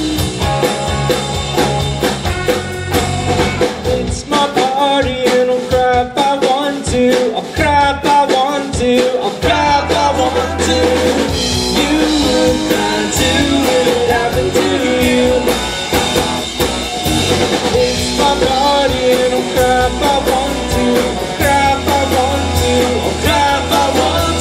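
Live rock band of electric guitar, keyboard and drum kit playing an upbeat rock and roll number, with singing over it. The deep bass drops away about four seconds in and comes back strongly near ten seconds.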